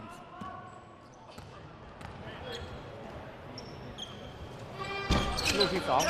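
Low crowd murmur in a basketball arena during a free throw, with a few faint high squeaks. About five seconds in a sharp thump, the ball hitting the rim on a missed free throw, and then voices rise.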